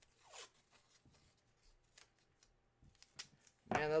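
Faint handling noise: a brief swish about half a second in, then scattered light clicks and rustles, with a sharper click near the end. A man's voice starts just before the end.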